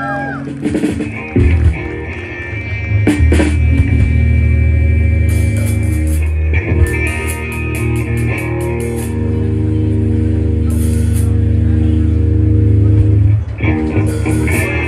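Live rock band of electric guitar, bass guitar and drum kit playing over a PA system: held guitar and bass chords with cymbal crashes early on the count and a quick run of drum hits about halfway through.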